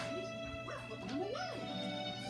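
Cartoon soundtrack playing from a television: steady background music with short rising-and-falling cries from a cartoon character in the middle.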